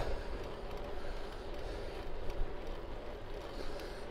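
Steady wind rush with a low rumble on the microphone of a bicycle ridden at about 15 mph on a windy day.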